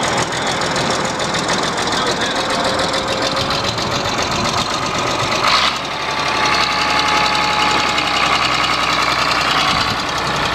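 Case crawler dozer's engine running just after being started. A little past halfway there is a brief louder burst and the sound changes abruptly, settling into a steadier, fuller running note.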